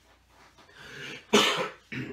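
A man coughing: a drawn breath, then one sharp, loud cough about two thirds of the way in and a second, shorter cough at the very end.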